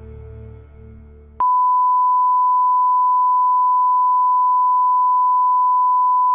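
Soft music trails off for about a second and a half, then a loud, steady single-pitch test tone cuts in sharply and holds unchanged: the line-up tone that runs with colour bars.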